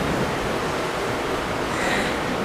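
Steady, even hiss of background noise, with no speech and no distinct event.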